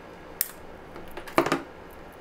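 Metal scissors snipping the plastic internal cross-brace (spline) of a Cat6 cable: a sharp click about half a second in, then a louder snip with a few small clicks about a second and a half in.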